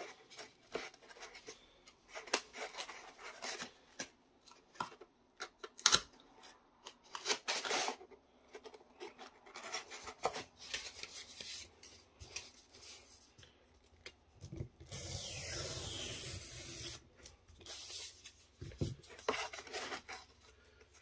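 Craft work on painted foam board with a hobby knife: scattered taps, clicks and rubbing as the board is cut, pressed and handled, with a steady rasping stretch of about two seconds near the middle.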